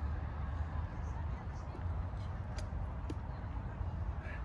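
Steady low outdoor background rumble, with a couple of faint clicks about two and a half and three seconds in.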